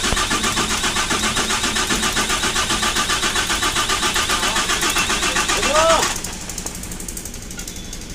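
Freshly overhauled Volvo diesel engine in an Eicher Pro 6025T tipper being turned over for its first start, with a fast, even pulsing rhythm that cuts off abruptly about six seconds in.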